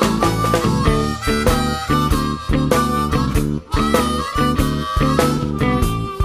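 Harmonica blues: a harmonica leads with held notes over a band playing a steady beat.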